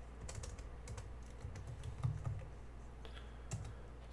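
Typing on a laptop keyboard: an irregular run of soft key clicks as a terminal command is entered.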